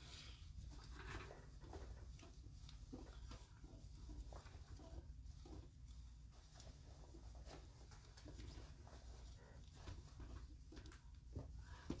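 Near silence: faint scattered rustles and soft ticks of cloth being handled as the fabric belt of a shirt dress is tied, over a low steady room hum.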